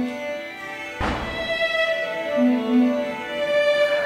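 Music played on an iPad instrument app locked to a pentatonic scale: a held note fades, then about a second in several new notes are struck together and sustained, with a lower note sounding briefly near the middle.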